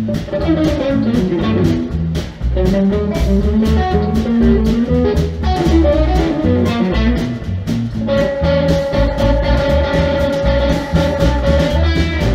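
Electric blues band playing live, with no singing: an electric guitar plays a bending lead line over electric bass and a drum kit. About eight seconds in, the guitar holds one long sustained note.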